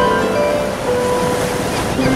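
Renaissance harp playing a slow melody of single held notes over the steady wash of ocean surf.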